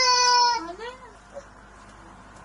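A toddler's voice: a long, high vocal note held at one steady pitch that breaks off about half a second in, followed by a short rising-and-falling whine.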